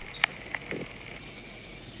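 Faint hiss with a few soft clicks in the first second, the quiet sound of a handheld phone video moving through a still house.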